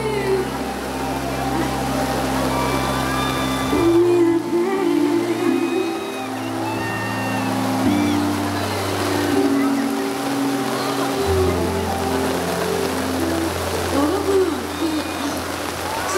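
Live ballad music through a concert sound system: slow, sustained bass notes shifting every few seconds under a melody line, with steady rain hiss underneath.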